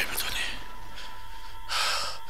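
A narrator's voice ending a syllable, then a pause over steady recording hiss and faint hum, with a short breath drawn in near the end.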